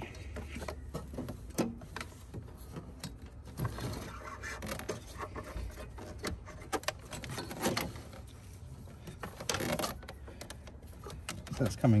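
Polyurethane breather hose being fed and pulled by hand through a crowded engine bay, with scattered clicks, taps and rubbing as it catches on other hoses and parts.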